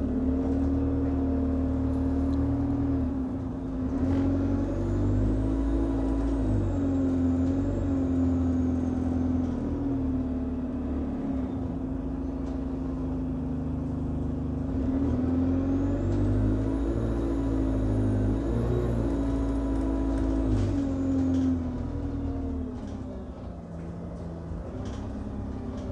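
Alexander Dennis Enviro200 Dart single-decker bus heard from inside the saloon while driving: the diesel engine note steps up and down in pitch as it shifts gear, over a low road rumble. A faint high whine rises and falls twice, and the engine quietens near the end.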